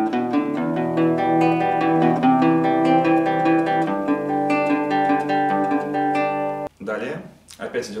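Nylon-string acoustic-electric guitar fingerpicked at full tempo: a rising bass run of four notes (G, A, B, D), then arpeggiated Em, C and G6 chords. It stops abruptly near the end.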